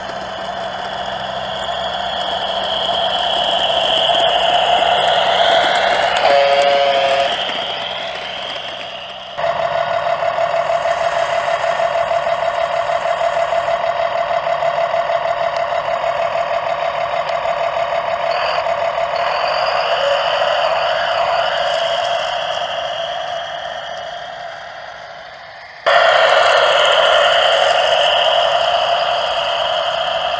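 Simulated truck diesel engine from a DasMikro sound unit, played through the RC tractor-trailer's small onboard speaker, running with a fast pulsing beat that rises and falls in level. A brief pitched tone sounds about seven seconds in, and the sound jumps abruptly to a louder level about nine seconds in and again near the end.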